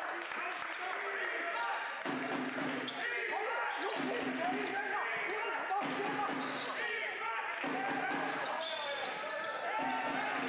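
Basketball bouncing on a hardwood court during live play, under continuous voices in the hall.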